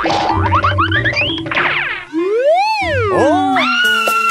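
Cartoon-style comedy sound effects over music: a run of quick rising boing glides, then one big pitch swoop up and back down about halfway through, ending in a steady held high tone.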